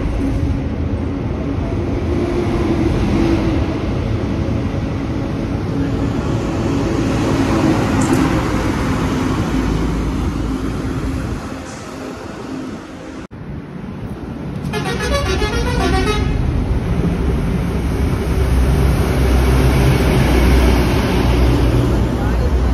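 Heavy truck engines and passing traffic on a wet highway, with a steady low engine hum and tyre hiss. About fifteen seconds in, a rapidly pulsing vehicle horn sounds for roughly a second.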